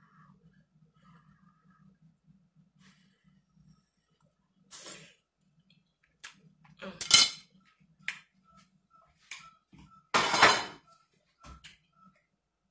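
Metal fork scraping and clinking on a dinner plate of food, in a handful of separate strokes with the longest and loudest about seven and ten seconds in.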